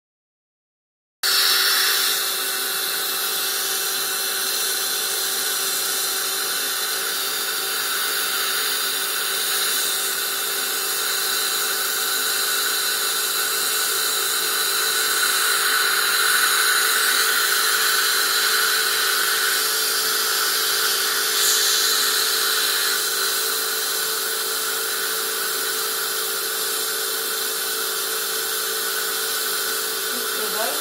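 Dental high-volume suction running at the gum, a steady hiss over a steady hum, starting about a second in.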